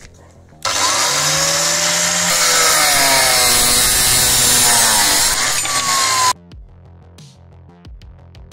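Abrasive cut-off saw grinding through square steel tube: a loud, harsh grinding with a motor whine that wavers and slides in pitch as the disc works under load. It starts suddenly about half a second in and cuts off sharply with under two seconds left.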